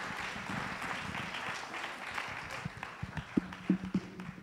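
Audience applauding, the clapping thinning out and fading over a few seconds, with a few dull knocks near the end.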